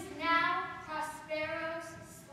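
A young girl's high voice in long held phrases with a steady pitch, close to singing.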